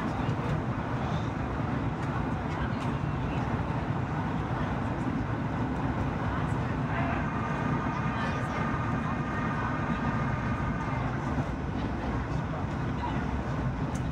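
Steady cabin noise of a Boeing 737-800 on its descent, heard from a window seat over the wing: the even roar of the engines and the airflow over the wing with its flaps extended. Faint voices sound in the cabin around the middle.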